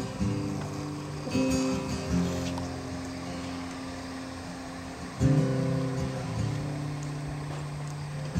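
Solo acoustic guitar playing a song's intro: a few strummed chords, each left to ring out before the next.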